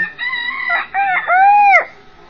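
A rooster crowing once: a few short held notes, then a long arched final note, the loudest part, that stops near the end.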